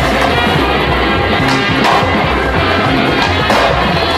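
Music playing over a skateboard rolling, with a few sharp clacks of the board in the second half.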